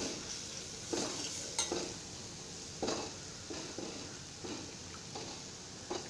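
Red chilli and onion masala sizzling gently in a stainless steel kadai while a steel spoon stirs it, scraping and clicking against the pan several times.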